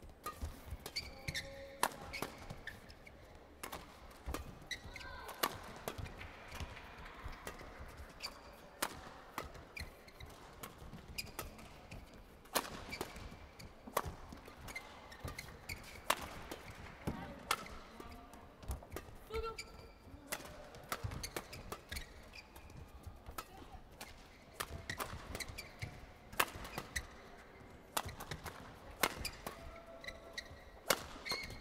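A long badminton doubles rally: racket strings strike the shuttlecock in quick, irregular succession, with short sharp squeaks of court shoes between the hits.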